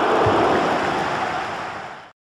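Steady rushing noise from a sound effect laid under an animated logo intro, with a soft low thump early on; it fades out near the end.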